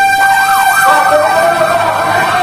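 A loud siren-like electronic tone: one steady pitch with a warbling, wavering pitch over it. It starts and stops abruptly, lasting about two and a half seconds.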